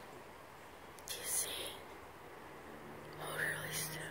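A person whispering softly close to the microphone: two short breathy bursts, one about a second in and one near the end.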